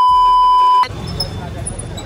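TV colour-bar test tone: a single loud, steady high beep lasting about a second that cuts off sharply. It is followed by the low hum of city street traffic.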